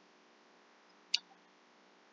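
Near silence with faint hiss, broken by a single short click a little over a second in.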